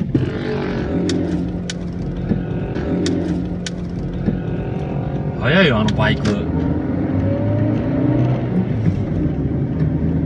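Car engine and road noise heard from inside the cabin while driving, the engine note drifting up and down. A few light clicks come in the first few seconds, and a short sound rising and falling in pitch comes just past halfway.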